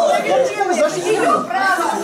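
Several people talking over one another at once, a jumble of voices with no single clear speaker.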